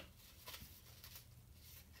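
Near silence: room tone with a faint low hum and a few faint rustles of construction paper being handled.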